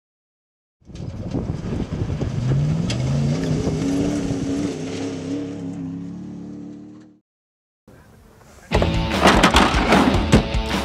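A vehicle engine accelerating, its pitch climbing over about a second and a half and then holding steady before fading out. Loud rock music starts near the end.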